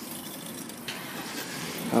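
A motor vehicle's engine running close by, heard as a steady, even rumble mixed with outdoor traffic noise, with a higher hiss joining about halfway through.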